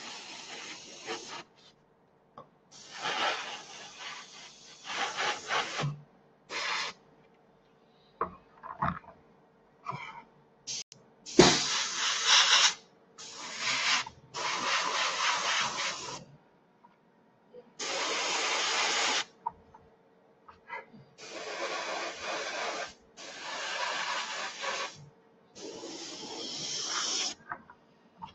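AMMO by Mig Jiménez AirCobra airbrush spraying red paint in about ten short bursts of hiss, each one to two seconds long, with pauses between them as the trigger is pressed and released.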